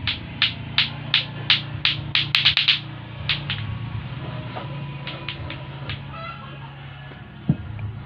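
Lato-lato clacker balls knocking together in a steady rhythm of about three clacks a second, growing louder and speeding into a quick flurry of clacks about two seconds in, then breaking off shortly after three seconds in. A few fainter clacks follow around five to six seconds in, with background music underneath.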